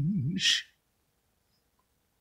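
A man's singing voice holds the final note of the song with a wide, slow vibrato, ending about half a second in with a short breathy exhale.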